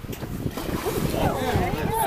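People talking aboard a boat, the words unclear, over a steady low rumble of wind on the microphone and water.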